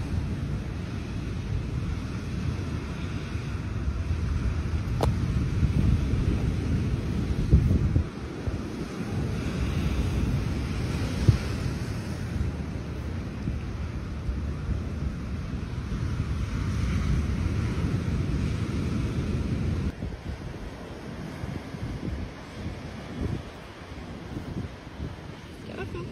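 Wind buffeting the microphone, a steady low rumble, over surf breaking on the shore. A single sharp click about halfway through.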